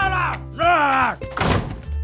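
A cartoon character's angry wordless shouting in two short calls, the second falling in pitch, then a short thunk about one and a half seconds in, over background music.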